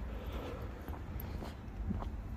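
Steady low rumble of street background noise, with no distinct sound standing out.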